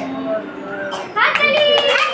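A roomful of young children's high voices chattering and calling out all at once, getting louder about a second in.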